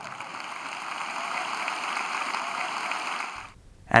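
Audience applauding, a steady sound of many hands clapping that cuts off abruptly about three and a half seconds in.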